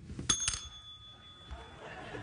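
A desk service bell struck a third of a second in, its metal dome ringing with a clear high tone that fades over about a second and a half.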